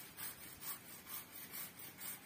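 Hand saw cutting through a teak branch, faint, in an even rhythm of about two rasping strokes a second.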